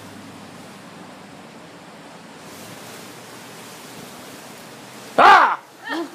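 Steady background hiss. About five seconds in, a single short, loud, high-pitched squeal that rises and then falls in pitch, from a child.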